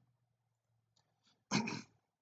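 A man's single short cough about one and a half seconds in, after near silence with two faint mouse clicks.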